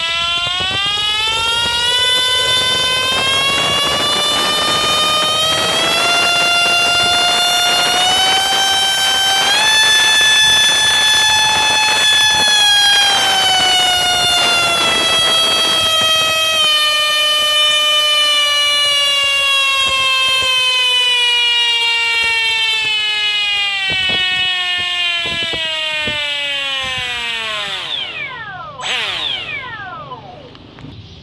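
Electric ducted-fan motor of an RC F-16 model jet whining under a thrust test. The pitch climbs in steps to full power about ten seconds in, then eases slowly back down. It spins down quickly and stops near the end.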